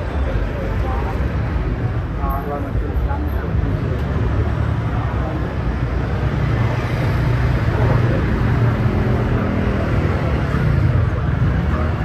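Busy street traffic: motor scooters and cars running past close by, one engine rising and falling in pitch in the second half, with people's voices in the background.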